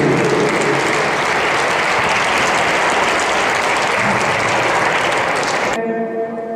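Audience applauding steadily, cutting off suddenly near the end.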